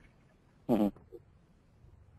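A single short spoken 'uh-huh' of acknowledgement, a little over half a second in; otherwise only faint room tone.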